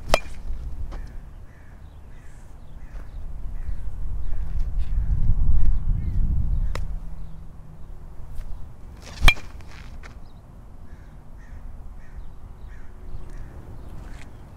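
Aluminum baseball bat striking a ball, a sharp ringing ping at the start and a louder one about nine seconds in. Between the hits there is a low rumble, and crows caw in the background.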